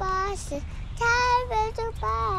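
A young child singing a counting song about little buses, two held notes with the second one higher and louder.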